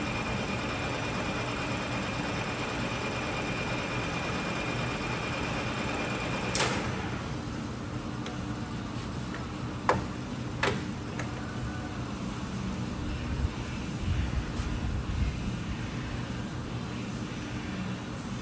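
Clausing Colchester 15" geared-head lathe running with a steady hum and a thin high whine while the cross-slide power feed is engaged. The whine stops with a sharp clunk about six and a half seconds in, and two more sharp clicks of the apron levers follow around ten seconds in while the spindle keeps running.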